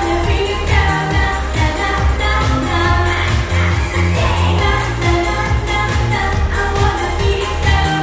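A girl singing a pop song into a microphone over an amplified backing track with a heavy, steady bass beat.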